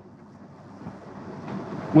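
Sheets of paper rustling in the hands close to a lectern microphone, faint at first and growing louder near the end.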